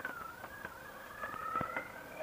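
Motorcycle engine pulling away from a stop, heard faintly as a thin whine that rises slowly in pitch.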